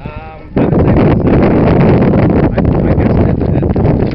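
Wind buffeting the microphone: a loud, ragged rushing that sets in about half a second in, after a short pitched sound at the very start.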